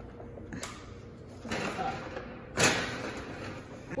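Oven door and rack sounds as a foil baking pan goes into the oven: a click about half a second in, a scraping rustle, then a loud bang of the door shutting a little after two and a half seconds in.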